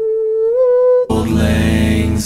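A cappella vocal harmony: a single voice holds one note that lifts slightly in pitch, then about a second in the full group comes back in with a sustained chord over a deep bass.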